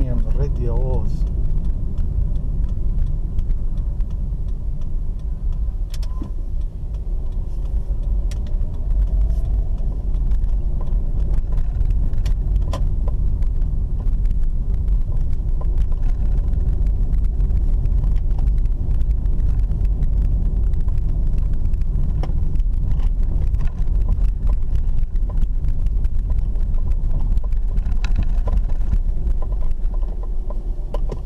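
Car driving slowly, heard from inside the cabin: a steady low rumble of engine and tyres on the road, with scattered light clicks and rattles.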